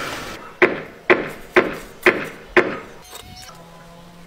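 Five sharp knocks, evenly spaced about half a second apart, each with a brief ring, like blows of a hammer.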